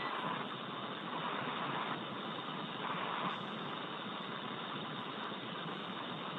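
Steady hiss of an open space-to-ground radio loop between transmissions, even and unbroken, with a muffled, narrow-band sound.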